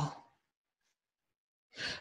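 A person's breathy, sigh-like "wow" trailing off at the start, then silence, with a short intake of breath near the end just before speech resumes.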